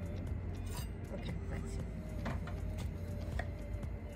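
A few light knocks and clinks of a kitchen knife on a wooden cutting board as a small papaya is cut in half, over a steady low background hum.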